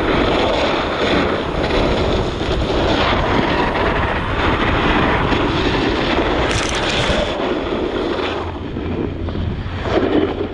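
Wind rushing over the microphone of a camera moving down a ski slope, mixed with snowboard edges scraping across packed snow. A steady, loud roar, with a brief sharper hiss about seven seconds in.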